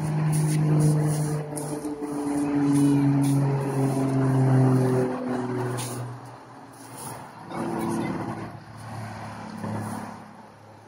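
Road traffic below: a heavy vehicle's engine drone, its pitch slowly dropping as it passes, loudest in the first five seconds. It is followed by lighter general traffic noise.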